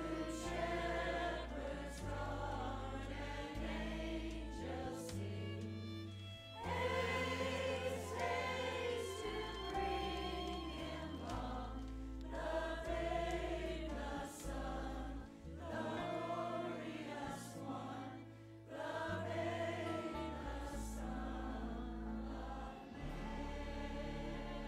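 Mixed choir of men and women singing together, with an accompaniment holding long, steady low bass notes beneath the voices.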